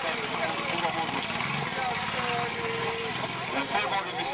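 Autocross buggy engine running as the car drives over the muddy track, heard under a voice talking.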